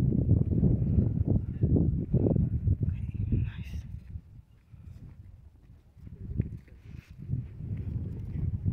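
Wind buffeting the microphone: an uneven, gusting low rumble that dies down for a couple of seconds around the middle and picks up again near the end.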